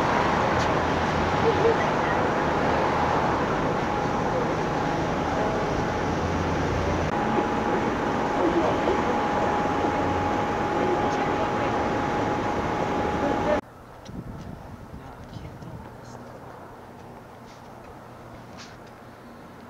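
Street ambience, steady and fairly loud: road traffic with a noisy haze and a faint steady hum. About 13 seconds in it cuts off suddenly to a much quieter outdoor background with a few faint clicks.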